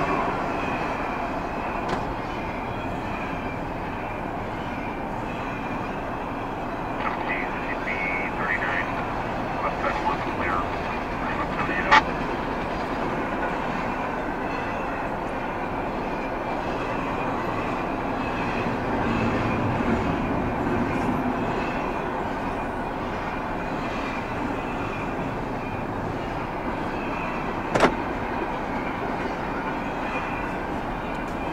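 Double-stack intermodal freight train's well cars rolling past close by, a steady rumble of wheels on rail, with two sharp knocks, one near the middle and one near the end.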